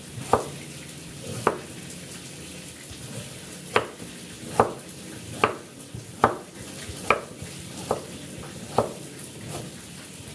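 Cleaver chopping bamboo shoots on a chopping board: about nine sharp knocks at an uneven pace, roughly one a second, with a two-second pause after the first two.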